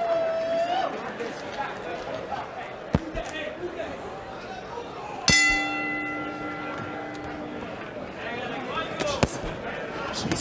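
Boxing ring bell struck once about five seconds in, ringing out for about two and a half seconds over arena crowd noise and shouts; a couple of short sharp knocks come before and after it.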